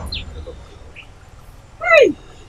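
Two faint short chirps, then near the end a single brief, loud, high-pitched cry that slides steeply down in pitch.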